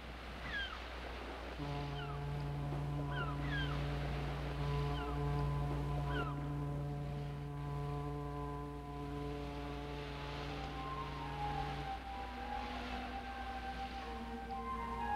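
A foghorn sounds one long, steady, low blast of about ten seconds, starting about a second and a half in and stopping near the end. A few short, falling bird cries come over it in the first half.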